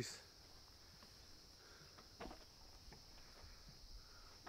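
Near silence with a faint, steady high-pitched insect drone, and a soft click about two seconds in.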